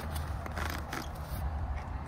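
Folding wheelchair frame being folded by lifting the seat: a few short metal clicks and rattles from the cross-brace and seat rails, with fabric rustling, over a steady low rumble.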